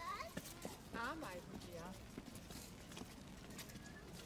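Faint, indistinct voices: a few short utterances in the first two seconds, then quieter.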